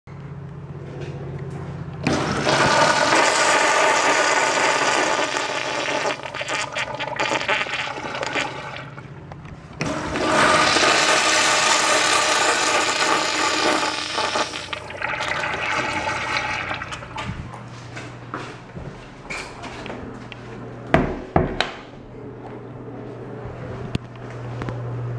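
Two Mansfield wall urinals flushing one after the other through their chrome flush valves. Each flush starts suddenly with a loud rush of water, and the second one tapers off gradually. A low hum sits under the quiet stretches, and two sharp knocks come near the end.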